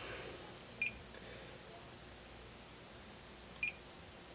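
Fluke 1587 FC insulation multimeter giving two short, high beeps about three seconds apart as its RANGE button is pressed to step the ohms range.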